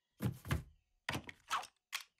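Cartoon sound effect of a run of about five hollow thunks, roughly two a second, as something knocks its way through a riveted metal wall.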